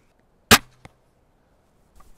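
850 lb windlass crossbow, fitted with a lighter 140 g string, shooting a 93 g bolt: one sharp, loud crack as the string is released about half a second in, with a brief low hum after it and a fainter click about a third of a second later.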